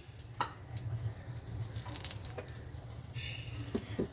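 A dried red chilli frying in hot oil in a non-stick pan, giving a few faint scattered pops and crackles over a low steady hum.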